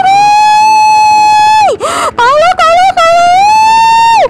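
A woman's voice screaming in panic: high-pitched, drawn-out cries for help. There is one long cry of nearly two seconds, a few short ones, and another long cry near the end.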